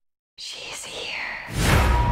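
Horror trailer sound design: after a short dead silence, a breathy, whisper-like sound with wavering pitch, then a rising swell about a second and a half in that lands on a loud low drone.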